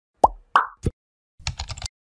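Animation sound effects: three quick cartoon pops about a third of a second apart, the first sweeping upward, then a rapid patter of keyboard-typing clicks as text fills a search bar.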